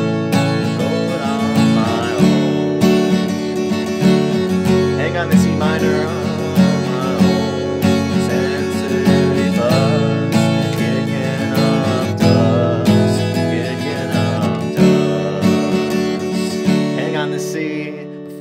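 Acoustic guitar, capo on the second fret, strummed through a chord progression of E minor, G, C, D/F# and G with G6 changes. The strumming tails off near the end.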